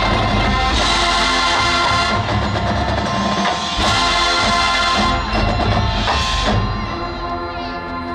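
High school marching band playing: sustained brass and wind chords over drums and front-ensemble percussion, with brighter, fuller swells about a second in and again around four seconds, easing off slightly near the end.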